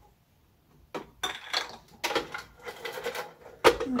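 Clinks and clatters of a glass blender jar being handled and seated on its base, starting about a second in. Near the end the blender motor starts with a sudden loud burst.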